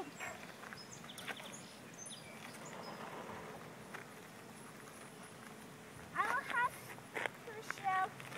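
A young child's high-pitched voice calls out briefly, about six seconds in and again near the end, over a quiet outdoor background. There is a sharp click about seven seconds in.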